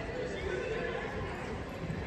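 A horse whinnying once, for about a second, near the start.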